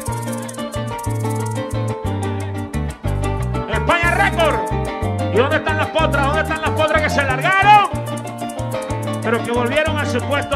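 Live joropo (música llanera) played by a band of llanera harps, cuatro and electric bass, the bass moving in steady low notes under quick, even maraca shakes. A voice sings long sliding lines over the band from about four seconds in to eight seconds, and again near the end.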